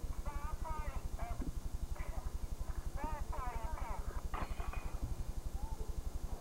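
A low hum from the recording, pulsing about ten times a second, begins suddenly with a cut in the old videotape footage. Over it come short, faint, high voice-like calls near the start, around the middle and once more later.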